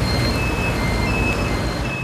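Steady low rumble of passing road traffic, with a few faint short high-pitched tones over it.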